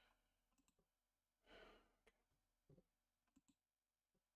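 Near silence with a few faint computer-mouse clicks and a short soft hiss, like a breath, about a second and a half in.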